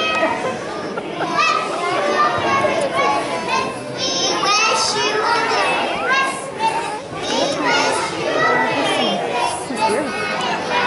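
A group of young children talking and calling out all at once, many high voices overlapping.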